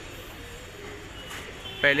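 Low background hum and hiss with a faint steady tone partway through; a man's voice starts near the end.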